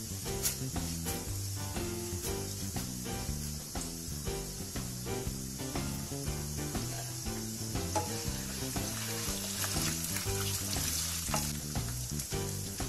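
Hot oil sizzling steadily in a kadai as urad dal, chana dal and mustard seeds fry in the tempering. Soft instrumental background music plays under it.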